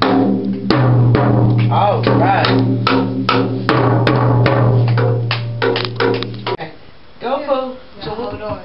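Child's drum kit struck with drumsticks in irregular hits, a quick cluster of strikes near the end, over steady background music that cuts off about six and a half seconds in.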